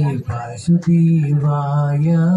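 A man chanting Hindu Sanskrit mantras in long held notes, breaking off briefly about half a second in before holding the next note.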